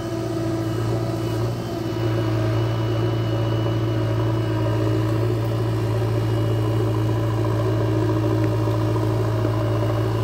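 JCB backhoe loader's diesel engine running steadily as the machine works its backhoe, digging soil and loading it into a trailer. A deep, even engine hum, with a slight dip in loudness about a second and a half in.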